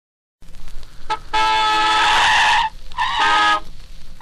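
Two-tone car horn honking as the record begins: a brief toot, then a long steady blast about a second in and a shorter one near the end, over the hiss of a 78 rpm shellac record.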